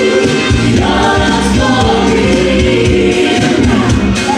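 Live pop performance: several vocalists singing together into microphones over loud music with a steady pulsing beat, the voices coming in about a second in.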